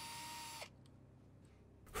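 Power drill driving a screw through a long extension bit: the motor whine rises as it spins up, holds steady, and cuts off just over half a second in.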